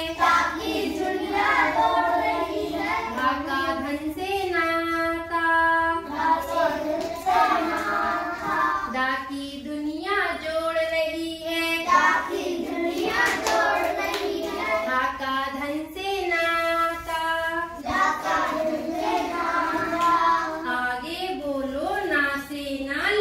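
A group of children singing the Hindi alphabet song (varnamala geet) together in short sung phrases, one after another.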